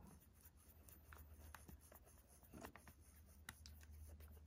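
Near silence, with a few faint clicks and light rubbing as a finger turns the plastic reels of an opened Sony WM-FX45 Walkman, its drive belt newly replaced.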